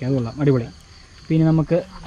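A steady, high insect drone runs in the background under a man's voice.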